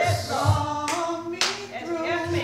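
Two sharp hand claps about half a second apart, over faint congregation voices.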